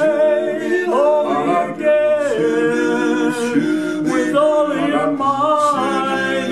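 Male barbershop quartet singing a cappella in close four-part harmony, holding chords that change every second or so.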